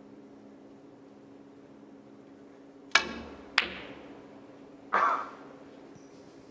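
Snooker shot: a sharp click of the cue tip striking the cue ball about three seconds in, a second sharp click of the cue ball hitting a red just over half a second later, then a duller knock about two seconds after that as the balls meet another ball or a cushion.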